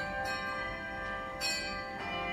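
Brass handbells rung by a handbell choir: several bell tones ring on together, with new bells struck about a quarter second in and again just before the end.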